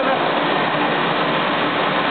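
Steady hiss of shoe-making machinery running during the forming of a shoe upper, with no breaks or separate strokes.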